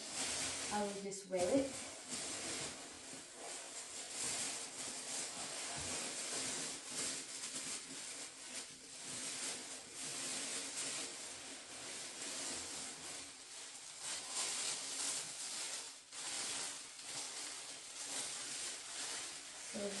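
Packing paper rustling and crinkling continuously as a boot is dug out of its box.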